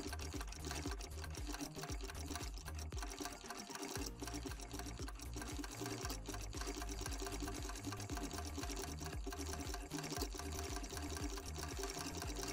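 Usha Tailor Deluxe half-shuttle sewing machine stitching through cloth, with a fast, even rhythm of strokes and a brief lull about four seconds in. The machine is running a little hard, which the owner traces to thread caught in the shuttle.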